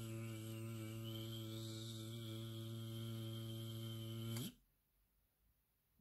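A low, steady droning hum on one held pitch, a buzzing sound standing in for a hive of bees. It cuts off abruptly about four and a half seconds in.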